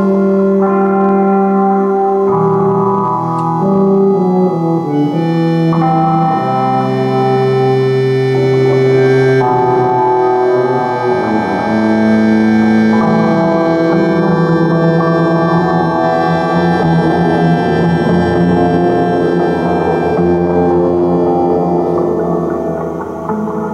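Accordion playing long held chords that shift every second or two, over low sustained tuba notes. In the second half a rougher, grainy layer joins under them.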